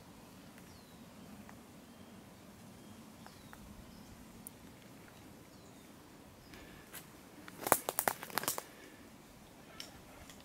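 A short burst of close crackling clicks about three-quarters of the way in, typical of handling noise on the camera, over a faint quiet outdoor background with a few faint high bird chirps.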